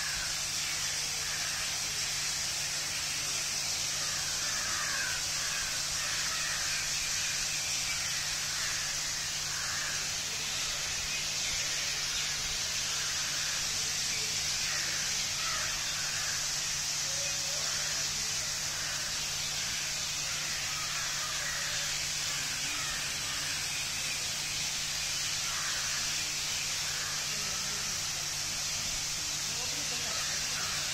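Steady hiss of water spraying from a dandelion hemisphere fountain nozzle and splashing into its pool, with a low steady hum underneath. Faint, indistinct voices come and go over it.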